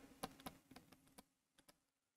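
Near silence with a quick string of faint clicks from a stylus tapping and stroking on a pen tablet as a word is handwritten; the clicks thin out in the second half.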